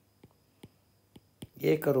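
About four faint, sharp clicks of a stylus tapping a pen tablet during handwriting, spaced irregularly over the first second and a half. A man's voice starts again near the end.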